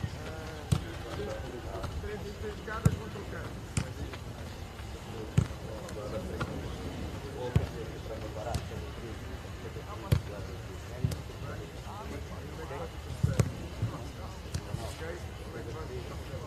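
Footballs being kicked on a grass training pitch: about a dozen sharp thuds at irregular intervals of one to two seconds, over players' distant shouts.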